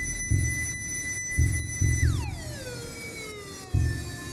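Ambient electronic music played on a Korg Volca Keys analog synth and a Volca Drum digital drum machine, sequenced over MIDI from VCV Rack. Deep drum hits fall every second or so under a high held synth tone, which about halfway through glides steeply down in pitch and settles lower.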